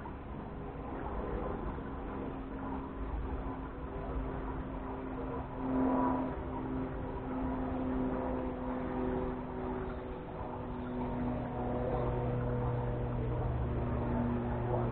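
A motor or engine running steadily, its hum shifting slightly in pitch, louder for a moment about six seconds in, with a deeper hum strengthening from about eleven seconds.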